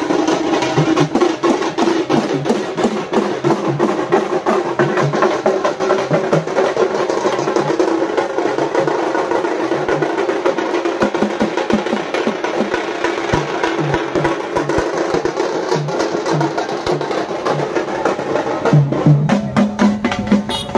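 Loud, fast drumming from a street procession, with dense rapid strikes in a steady, unbroken rhythm.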